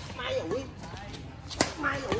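A badminton racket strikes a shuttlecock with a sharp crack about one and a half seconds in, amid faint voices.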